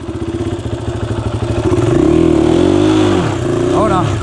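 KTM 500 EXC-F's single-cylinder four-stroke engine running low, then revving up and down a few times as the rider works the throttle on a steep dirt climb. The rear tyre is spinning without traction.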